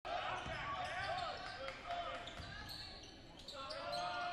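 Basketball game on a hardwood gym court: a ball bouncing with dull thumps and repeated short sneaker squeaks, with voices in the gym behind.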